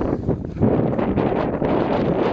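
Wind buffeting the camera's microphone, a dense, steady rumble that dips briefly about half a second in and then picks up again.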